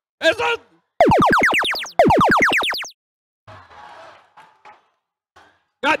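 Arena sound effect of the FRC Power Up field: two loud electronic tones, each about a second long, gliding steeply down in pitch like a boing, one straight after the other. It is the cue for a power-up being played from the vault.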